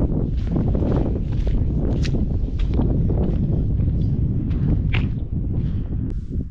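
Footsteps on wet sand and mud, about two steps a second, under a loud, steady low rumble of wind on the microphone.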